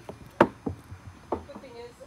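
A putter strikes a mini-golf ball with one sharp click about half a second in. A couple of lighter knocks follow as the ball hits the wooden final-hole box without dropping in.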